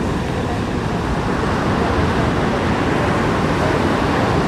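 Twin-engine widebody jet airliner on final approach, heard as a steady low rushing rumble that builds slightly as it nears, over wind and surf.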